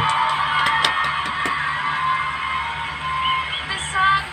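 Talent-show playback audio: music over an audience's applause and cheering.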